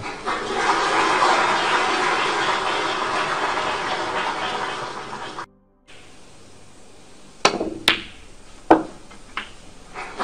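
Audience applause in a snooker arena that dies away. Then a cue tip strikes the cue ball and snooker balls click together, four sharp knocks in under two seconds.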